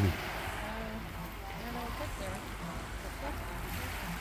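Small Mediterranean waves washing onto a pebble beach: a steady, even wash of surf.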